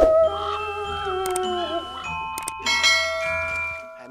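Background music with bell-like chiming notes. A wavering held note runs through the first half, and from about halfway on more chime notes join in and ring on together.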